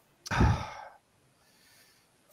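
A man sighing, one breathy exhale of under a second about a quarter second in, fading out.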